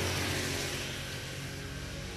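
A steady low mechanical hum with a hiss, fading slightly.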